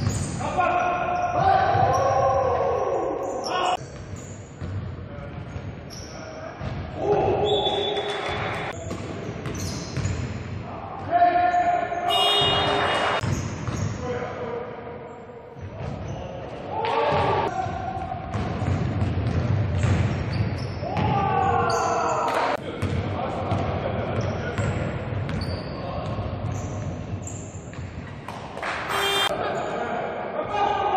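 Live game sound of indoor basketball in a gym: the ball bouncing on the hardwood floor, with players' voices shouting and calling out across the court, echoing in the hall.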